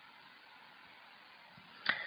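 Near silence: faint steady recording hiss, then a brief intake of breath from the narrator near the end.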